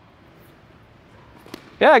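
Quiet background hum of a large indoor tennis hall, broken by one faint sharp knock about one and a half seconds in. A man's voice starts just before the end.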